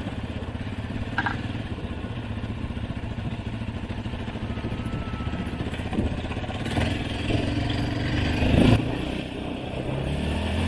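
Off-road vehicle engine running under throttle while riding across sand, with a steady fast pulse and a brief louder surge near the end.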